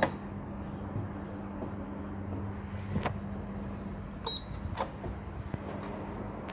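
Lift call button pressed on a Stannah passenger lift landing panel: a click at the start, then a steady low hum with a few faint clicks and a short high beep about four seconds in.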